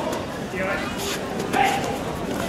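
A few short, sharp shouted calls over the steady chatter of a large, echoing hall.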